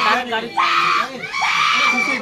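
Crowd of people shouting and screaming, with raised voices held in long high cries.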